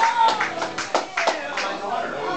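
Scattered audience clapping in a club that thins out and stops a little over a second in, with crowd voices underneath.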